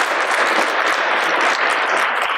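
An audience applauding steadily, many hands clapping at once.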